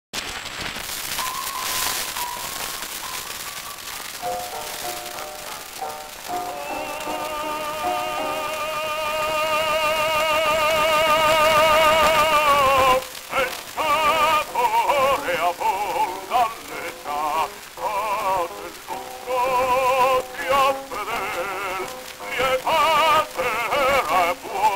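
Early acoustic gramophone disc recording, with surface hiss and crackle: a short accompaniment introduction of plain steady notes, then an operatic baritone voice comes in about six seconds in on a long held note with wide vibrato and goes on into sung phrases.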